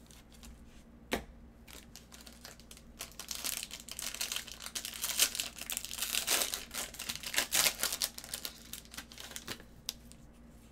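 A foil trading-card pack wrapper being torn open and crinkled, a dense crackling that starts about three seconds in, is loudest in the middle and fades near the end. A single sharp click comes about a second in.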